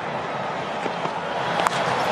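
Stadium crowd noise heard through a cricket TV broadcast: a steady noise that starts to swell near the end as the crowd reacts to a well-struck shot, with one brief sharp click shortly before the end.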